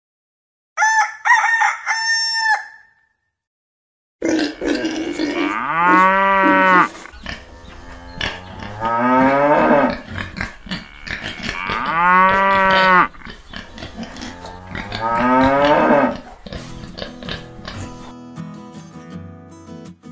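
Cow mooing sound effects: four long calls, each rising and falling in pitch and a few seconds apart, over light background music. A shorter, higher call sounds about a second in, before the music starts.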